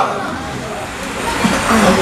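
A pause in a man's speech through a microphone and loudspeakers: the echo of his last words fades over the first half second, leaving a steady background noise, with a faint short vocal sound near the end.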